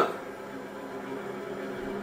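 Steady, low background sound of a sports hall on a TV broadcast: an even hiss with a faint murmur and no distinct events.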